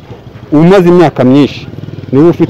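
A man speaking, with a motor vehicle's engine running in the background, heard as a low, even pulsing once he pauses near the end.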